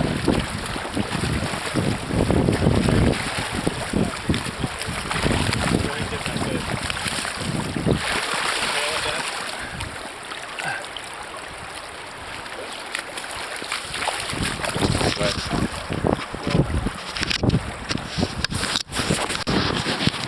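Rushing river current with wind buffeting the microphone, and a hooked steelhead splashing at the surface in the shallows near the start. A few sharp knocks near the end.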